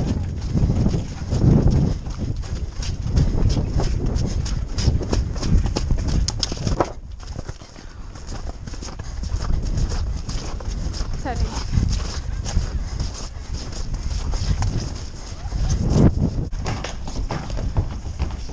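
Hoofbeats of a horse moving at speed over soft, wet turf, heard from the saddle, with wind rumbling on the microphone. The hoofbeats ease off briefly about seven seconds in, then pick up again.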